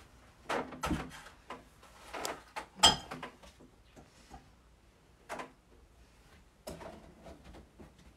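Knocks and clatter of household items, pots, cups and a cardboard box, being set down and shifted around on a wooden dining table: a scattered series of short thuds, the loudest about three seconds in.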